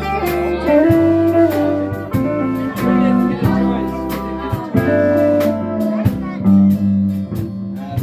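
Country band playing an instrumental intro: a pedal steel guitar carries the melody with sliding, gliding notes over strummed acoustic guitar, electric guitar and electric bass.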